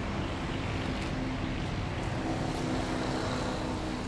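Steady low engine hum from a motor vehicle, with a faint droning tone that comes through more clearly in the second half.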